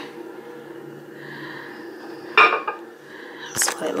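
A serum bottle being handled and set down on a hard countertop, ending in a sharp knock near the end, over a low steady hum.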